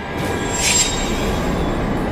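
Sudden shrill screeching horror sting over a low rumbling drone, rising to its peak under a second in and then easing off.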